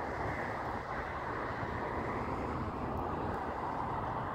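Steady outdoor background rush with no distinct events.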